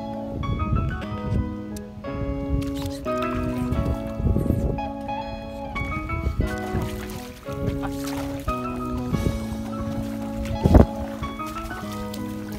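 Background music of sustained chords changing about every second or so, over low rumbling handling noise, with one sharp loud knock near the end.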